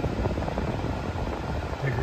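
Steady rush of air from the cabin climate-control fan in a 2024 Honda Accord Touring Hybrid, parked with its system on.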